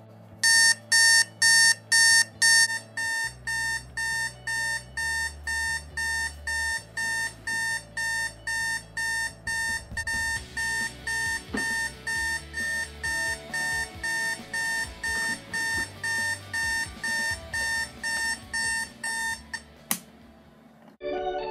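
Spartus digital alarm clock sounding its alarm: evenly spaced electronic beeps, about two a second, with the first few louder than the rest. The beeping stops near the end as a hand reaches the clock.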